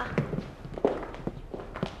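A few unhurried footsteps, each a short knock, as a woman walks across the room.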